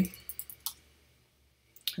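A few quick computer keyboard keystrokes within the first second, typing into a web browser's address bar.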